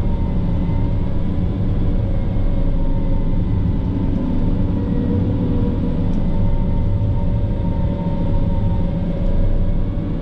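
PistenBully 600 snow groomer running steadily as it pushes snow, heard inside its cab: a deep engine drone with a steady whine laid over it.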